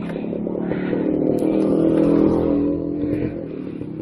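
Engine of a passing motor tricycle, growing louder to a peak about halfway through and fading as it goes by.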